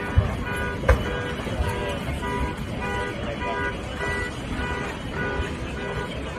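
Car alarms sounding from the burning car park, a repeating electronic beep about two to three times a second, with two sharp bangs in the first second.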